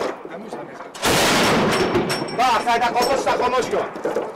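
A sudden, loud burst of close gunfire about a second in, lasting about a second, after a few fainter shots; voices follow near the end.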